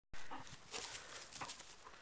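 A dog moving right up against the camera and then bounding off across grass: a few short rustling thumps of fur and paws.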